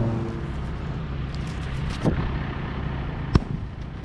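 A single sharp knock about three and a half seconds in, the loudest sound, with a fainter knock about two seconds in, over a steady low engine-like hum that fades within the first half-second.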